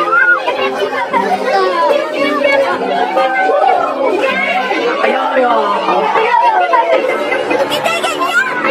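Lively voices laughing and chattering without clear words, over film background music holding sustained low notes.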